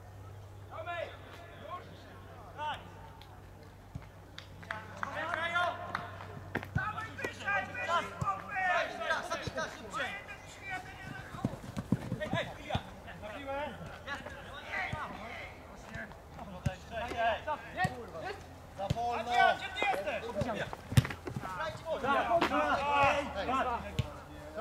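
Football players calling and shouting to one another during play, with a few sharp thuds of the ball being kicked.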